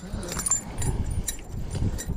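A hooked largemouth bass being swung out of the water into a bass boat: rumble of handling and wind on the microphone, with a few light clicks and rattles from the thrashing fish, lure and tackle.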